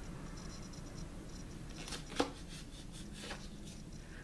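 Faint scraping of a paint chip card dragged through wet acrylic paint across a canvas, with one short click about halfway through, over a low steady room hum.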